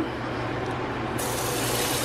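Kitchen faucet running: water spraying from the pull-down sprayhead into the sink with a steady hiss, turning brighter a little over a second in.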